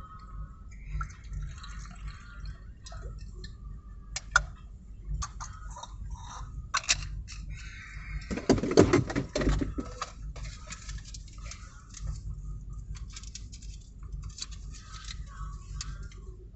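Traffic heard from inside a car stopped in a jam: a steady low rumble with scattered sharp clicks, and a louder, rougher burst of noise about eight to ten seconds in.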